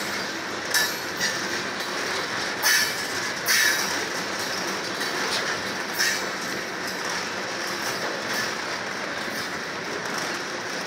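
Freight train of tank cars and covered hopper cars rolling past at close range: a steady rumble of steel wheels on rail, broken by a few irregular sharp clacks as the wheels pass over the rail joints.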